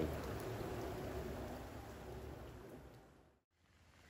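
Steady rain falling on the pool water and patio: an even hiss that fades and cuts out about three seconds in.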